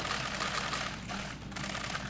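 A dense, rapid clatter of many camera shutters clicking at once, dropping away briefly a little after a second in and then starting again.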